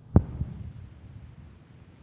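A sudden sharp low thump, a second softer one just after, then a low, uneven rumbling crackle over a faint hum.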